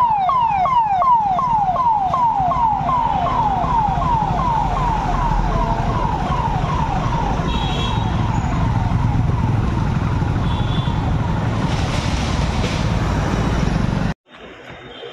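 Police SUV siren sounding a rapid falling wail, about three sweeps a second, fading away about halfway through as the vehicle passes. Underneath is a steady low rumble of engines and road traffic.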